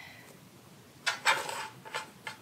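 Dough being set into a loaf pan: a short scraping rustle about a second in as the rolled dough log goes into the pan and is pressed down, then a light click near the end.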